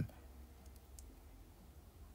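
A quiet pause with low room hum and two or three faint, short clicks about a second in.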